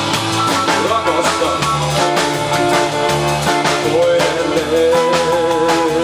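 Live rock and roll band playing an instrumental passage: hollow-body electric guitar lead over strummed acoustic guitar, bass and a Premier drum kit. Near the end the lead holds a note with a wavering pitch.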